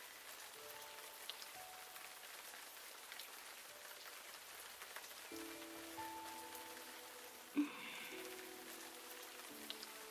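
Steady rain falling, a faint even hiss, under soft background music whose held notes grow fuller about five seconds in. A brief louder sound stands out about seven and a half seconds in.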